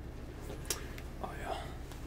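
Quiet room with a soft, whispered "oh yeah" a little over a second in, and a couple of faint short clicks.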